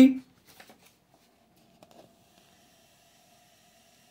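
Near silence except for a few faint rustles of paper being handled in the first two seconds, over a faint steady hum.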